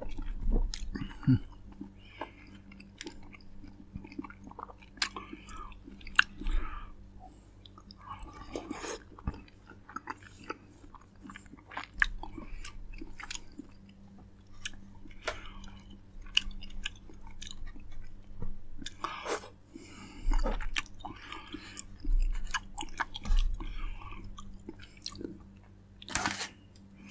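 Close-miked biting and chewing of fresh fruit: irregular wet bites and mouth clicks with chewing between them, over a faint steady low hum.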